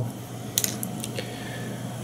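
A few faint, light clicks of small fly-tying tools and materials being handled at the tying bench.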